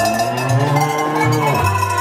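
Live Bavarian-style music: a piano accordion plays low bass notes that change every half second or so, under the long ringing tones of a set of hand-swung tuned bells carrying the tune.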